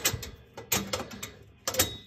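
A handful of light metallic clicks and taps as the sheet-metal burner parts and gas manifold of a gas boiler are handled, the clearest about a third of the way in and near the end.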